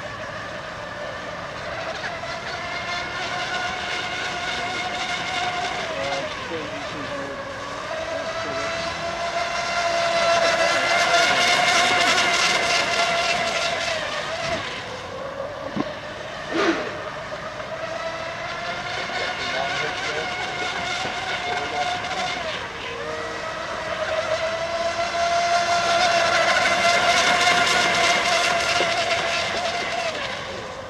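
High-pitched whine of a fast electric RC racing boat running at speed. The whine dips in pitch a few times as the boat slows through the turns, and swells louder twice as it passes close. There is one brief sharp pop a little past halfway.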